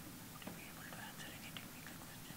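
Faint whispering and low voices over quiet room noise.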